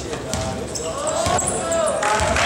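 Basketball being dribbled on a hardwood gym floor, bouncing repeatedly.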